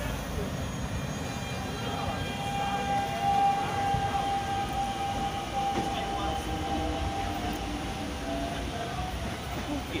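Electric multiple-unit commuter train pulling away from the platform: a steady motor whine with fainter higher tones, a few of them rising in pitch as it gathers speed, over a low rumble of wheels on rails.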